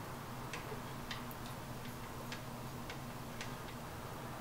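Surface noise of a 78 rpm disc turning under the stylus, with no music: a steady low hum and hiss with soft, irregular clicks and pops, about nine in all.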